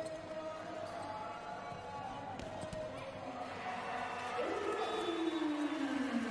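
Arena crowd noise with sustained voices or horns during a volleyball rally, and a few sharp smacks of the ball being served and struck.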